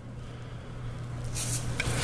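Faint steady low hum with a brief hiss about one and a half seconds in.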